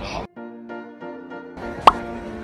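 Short musical jingle of a few held tones from an animated news logo sting. Near the end comes a single sharp pop sound effect over the returning street crowd noise.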